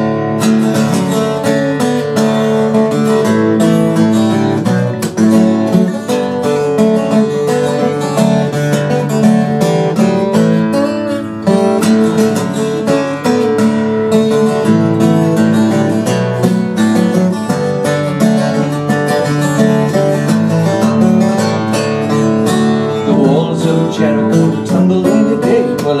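Solo acoustic guitar playing an instrumental break between verses of a folk song, a run of plucked and strummed notes with no singing.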